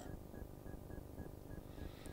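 A faint high electronic tone in short pips repeating several times a second, over low background noise.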